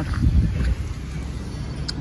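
Low, uneven rumble of wind on the microphone.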